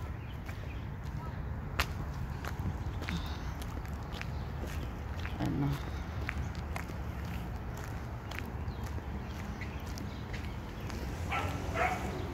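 Footsteps and scattered sharp clicks from walking with a handheld phone, over a low steady outdoor rumble. A short voice-like sound comes near the end.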